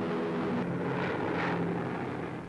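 Four-engined Avro Lancaster bomber taking off, its propeller engines roaring in a steady drone, with a swell of rushing noise about a second in.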